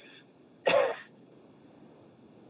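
A single short vocal sound from the caller, heard over the telephone line, about two-thirds of a second in, falling in pitch, followed by faint phone-line hiss.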